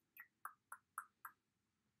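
A quick run of five short, soft clicks, about four a second, then quiet room tone.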